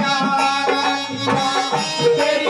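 Live Haryanvi ragni folk music with a drum beat, accompanying a stage dance.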